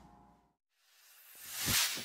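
Title-card sound effect: after a cut to silence, a whoosh swells for under a second and lands on a deep hit near the end, starting to break into a glassy shimmer.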